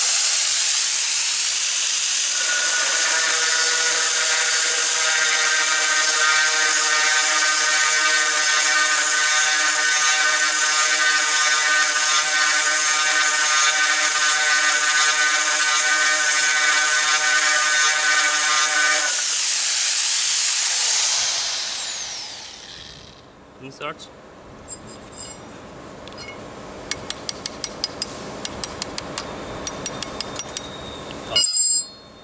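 Angle grinder fitted with an 8mm dry-drilling bit running at full speed while the bit cuts into hard ceramic tile, a steady high whine with a pitched ringing through most of the cut. About 21 seconds in it is switched off and winds down, followed by sharp metal clicks of a wrench working on the bit's fitting.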